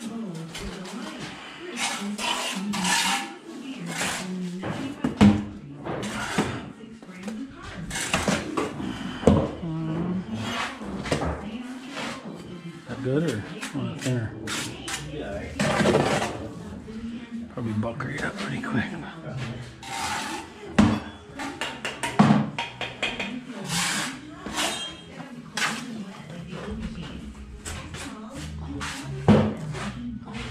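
Steel trowel scraping mortar and clinking against brick during bricklaying, an irregular run of scrapes and sharp clinks with the loudest strikes every few seconds.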